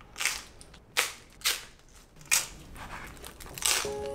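Crisp crust of a rice-flour Roman-style pizza crunching in five short, sharp crunches, a second or so apart.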